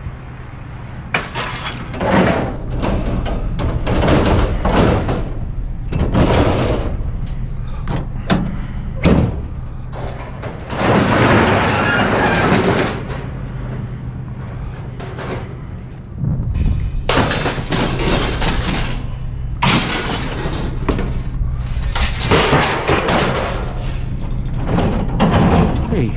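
Metal wire shelving racks clattering and scraping as they are handled and dropped, in irregular bursts, over a steady low hum.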